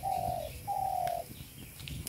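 A bird calling twice: two steady, low hooting notes of about half a second each, one right after the other in the first second and a half.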